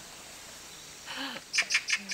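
A bird chirping: a quick run of about five short, high chirps in the second half.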